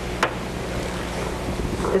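Steady low hum and hiss of room noise picked up by the meeting's microphones, with one sharp click about a quarter second in.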